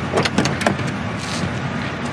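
Car sounds just after a low-speed collision: a few quick clicks and knocks in the first moment, then a steady low rumble.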